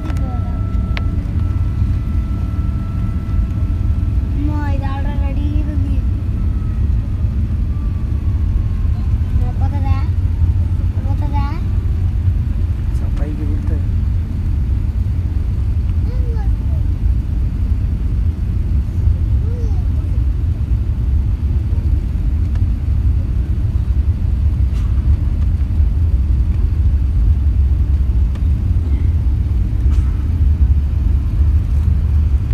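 Airliner cabin noise as the jet moves on the ground: a loud, steady low rumble from the engines and airframe that grows a little louder toward the end. A few brief voices in the cabin can be heard in the first half.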